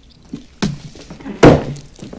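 A few knocks, then one heavy thunk about a second and a half in, with a short ring after it.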